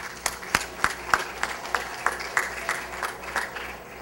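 A seated audience applauding: a light scattering of distinct hand claps that thins out and fades near the end.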